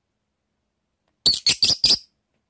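Blue masked lovebird giving four short, high-pitched chirps in quick succession, starting a little past halfway.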